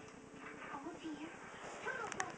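A few faint, short murmured vocal sounds, low and rising and falling, over quiet room tone.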